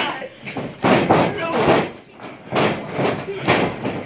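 A series of sharp smacks and thuds, about six in four seconds, from a pro wrestler striking a downed opponent on the ring canvas, with crowd voices between the blows.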